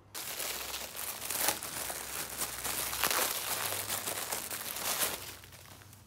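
Plastic crinkling and rustling as something is handled for about five and a half seconds, with louder surges about a second and a half and three seconds in, then fading.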